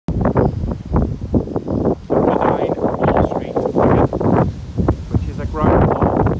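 A person talking, with wind rumbling on the microphone.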